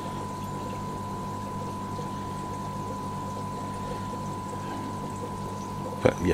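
Steady running noise of aquarium equipment: an even wash of moving water with a low hum and a thin constant whine over it, unchanging throughout.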